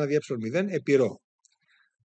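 A man speaking Greek for about a second, reading out the end of an equation, then a short pause with a faint click.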